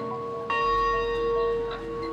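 A large hanging bell rung by pulling its rope. An earlier stroke is still ringing, then the bell is struck again about half a second in and rings on, slowly fading.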